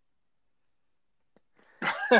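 Near silence, then a sudden short, loud vocal burst with a falling pitch near the end.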